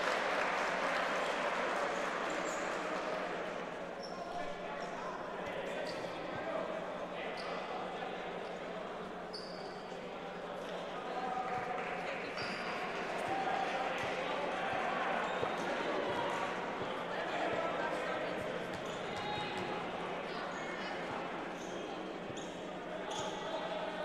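Murmur of many voices from spectators and players in a large gym, with a volleyball bouncing on the hardwood floor now and then.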